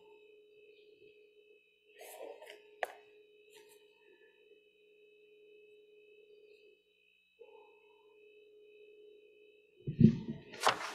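Near-quiet church room with a faint steady electrical hum and whine, broken by soft rustling and a sharp click about two to three seconds in. Just before the end a loud bump on the microphone as its stand is handled.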